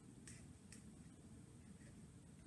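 Near silence with two faint short ticks, about half a second apart, of a pencil writing on paper.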